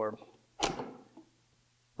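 Speech only: a man's voice trailing off, then a short breathy vocal sound and a pause with quiet room tone.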